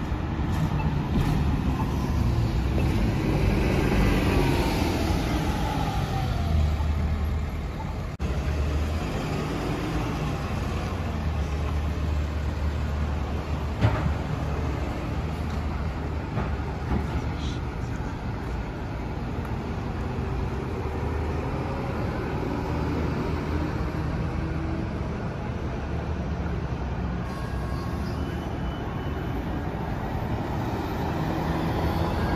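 City transit buses running past, with a steady low engine rumble throughout. In the first few seconds a bus accelerates and its engine note climbs and then falls. A single sharp knock comes about fourteen seconds in.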